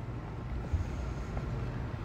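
Low, steady rumbling noise with no speech.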